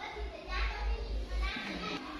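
Schoolchildren chattering in a classroom, several young voices talking over one another.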